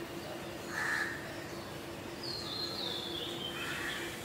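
Faint bird calls: a few short crow caws, one about a second in and another near the end, and a higher call that steps down in pitch in the middle, over a low steady hum.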